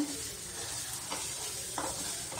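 Chopped onions and dry spices sizzling in hot oil in a kadhai as they brown, while a spatula stirs them with a couple of light scrapes against the pan.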